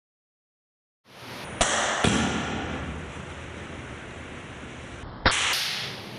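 A steady hiss starting about a second in, broken by three sharp cracks, two close together near the start and one about five seconds in.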